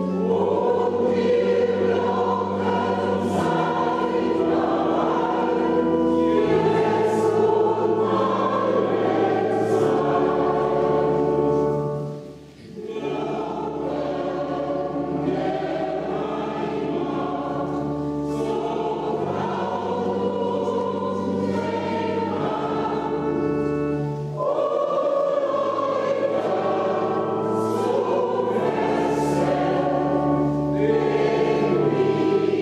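Choir singing a slow hymn in long held chords, with a brief pause about twelve seconds in.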